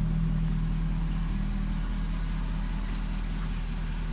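A 2006 Chevrolet Corvette's LS2 V8 idling steadily through an aftermarket Borla exhaust, with a low, even rumble.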